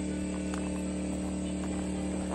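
Portable generator running steadily, a constant low hum.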